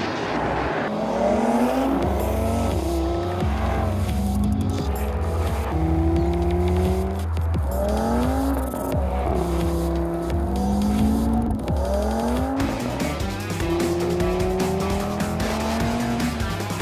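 Audi TT RS's turbocharged 2.5-litre five-cylinder engine accelerating hard through the gears: its pitch rises several times and falls back at each shift. Music plays underneath.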